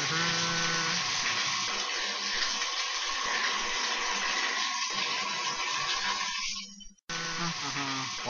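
Water running from a bathtub spout into the tub, a steady hiss. It breaks off suddenly for a moment near the end and then comes back.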